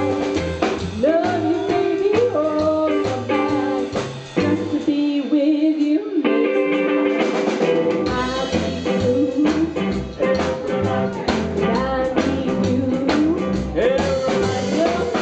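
Live rockabilly band: a woman singing over upright double bass, electric guitar and drums. About four seconds in, the bass and drums drop out for a few seconds while the singing and guitar carry on, then the full band comes back in.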